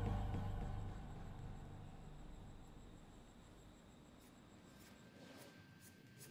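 Music fades out over the first two seconds into faint room tone. Near the end comes the faint, light scratching of a pencil on paper.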